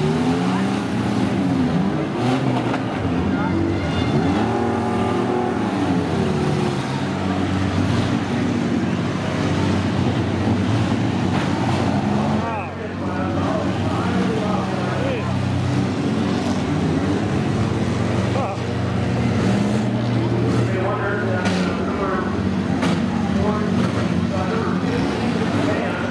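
Several demolition derby minivan engines revving hard, their pitch rising and falling again and again, with sharp metal crashes as the vans ram each other.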